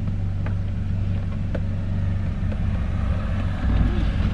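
Car engine idling steadily, heard from inside the cabin, a low even hum with a couple of faint clicks.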